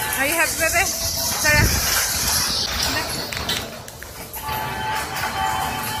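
Carousel music playing, with voices over it.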